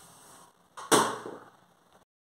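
A single sharp knock about a second in, something set down hard on a kitchen surface, fading quickly, against faint room hiss.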